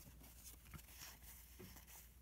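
Near silence, with faint rustles and small ticks of cardboard trading cards being flipped through by hand.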